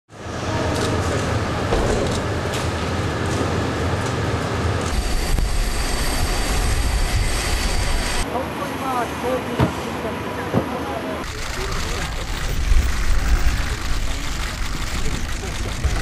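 Outdoor location sound from spliced news footage: a steady noisy background with a low rumble that changes abruptly at three cuts, about 5, 8 and 11 seconds in, with faint voices in the middle.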